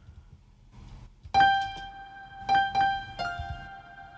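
FL Studio's FL Keys electric piano plugin playing a short phrase of sustained notes. It comes in about a second and a half in, with a few new notes struck after that.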